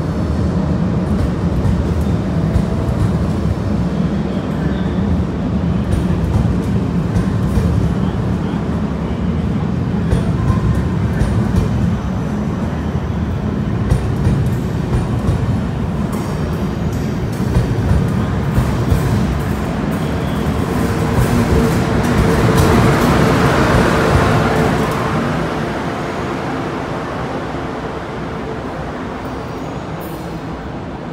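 DB ICE train rolling slowly past along the platform: a steady rumble of wheels and running gear that swells about two-thirds of the way through, then fades as the train pulls away.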